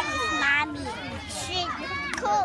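Young children talking in high-pitched voices, with one drawn-out voiced sound in the first half second.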